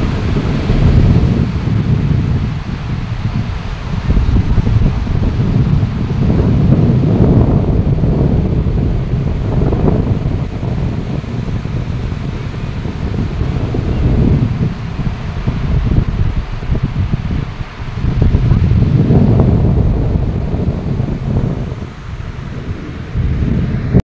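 Wind buffeting the microphone over sea waves breaking on a beach, the low rush swelling and easing every few seconds.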